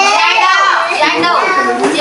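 A high-pitched, child-like voice talking without a break, its pitch swooping up and down.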